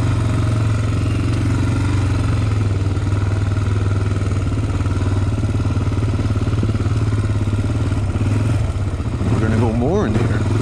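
Honda 400-class sport quad's single-cylinder four-stroke engine running steadily at low revs, then revving up sharply near the end.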